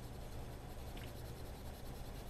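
Colored pencil scratching on paper in light shading strokes, over a steady low hum.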